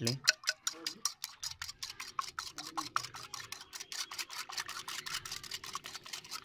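Coil spring whisk beating raw eggs in a glazed clay bowl: fast, even clicking of the metal coil against the bowl, about eight strokes a second.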